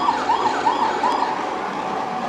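A siren yelping: a quick rise-and-fall tone repeating about three times a second, stopping a little past the middle.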